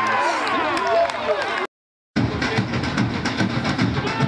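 Several men shouting together on a football pitch, as in a goal celebration, cut off suddenly near the halfway point. After a brief silence, music with a fast, steady drumbeat starts.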